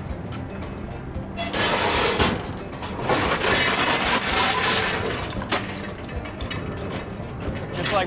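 Heavy dredge chain clattering over the rail of an oyster lugger as the oyster dredge is paid out, in two loud stretches about one and a half and three seconds in. The deck winch's engine hums steadily underneath.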